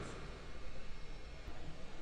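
Faint steady hiss with a low hum: the recording's room tone, with no drums playing.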